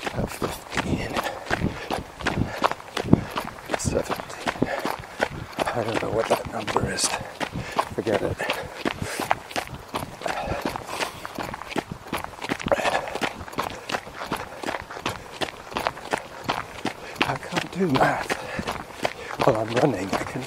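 A runner's steady footfalls on a path, in a continuous even rhythm, with his breathing and a few low muttered words close to the microphone.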